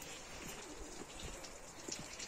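Faint bird calls over quiet outdoor background.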